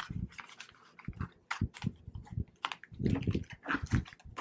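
Clear plastic cash envelope with bills inside being handled: irregular crinkling and rustling of the vinyl, with a few soft bumps against the desk, the loudest near the start and around three seconds in.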